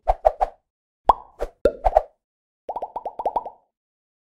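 Cartoon-style plop sound effects, short pops that each rise quickly in pitch: three pops, then about five more after a short gap, then a fast run of about eight.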